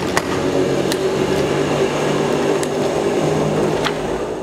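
A steady mechanical hum with a few sharp clicks about a second apart.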